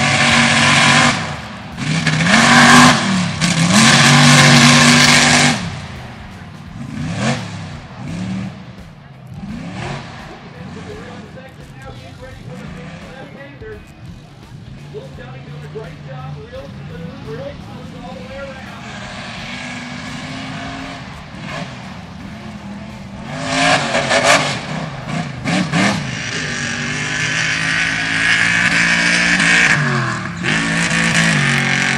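Tube-chassis race buggy engines at full throttle on a mud course, the revs rising and falling as they drive. The sound is loud at first, then drops to a fainter engine through the middle, and another engine comes in loud about three-quarters of the way through.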